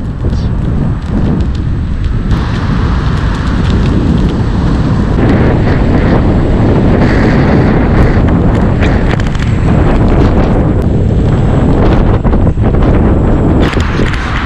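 Loud, steady wind rumble buffeting a camera microphone held out on a selfie stick while riding an electric unicycle at speed, with a few brief knocks.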